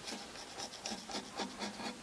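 Pfeil carving gouge making a quick, irregular run of short cuts in dry wood, scraping in hair texture.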